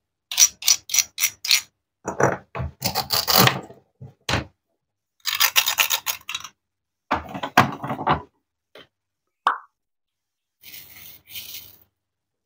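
Plastic toy fruit being handled: a quick run of about five light taps near the start as a wooden toy knife knocks on a plastic toy corn cob, then irregular bursts of plastic rubbing, scraping and clattering as the cut corn pieces are pulled apart and turned in the hands. A short squeak sounds once near the end.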